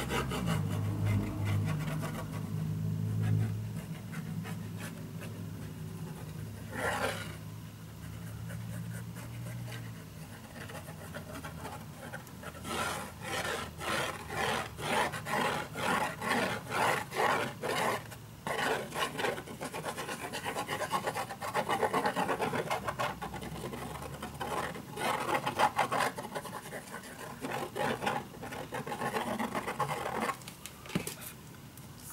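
White craft glue squeezed from a plastic squeeze bottle onto chipboard: from about the middle on, the glue comes out of the nozzle in quick pulses, two or three a second, in several runs. A low steady hum fills the first third.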